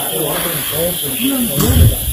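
Onlookers' voices talking and exclaiming over a steady background hiss, with a louder moment near the end.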